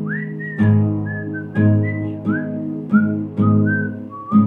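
A person whistling the song's melody over strummed acoustic guitar chords. The whistle scoops up into its first note, then steps down through a few held notes as the guitar is strummed about once a second.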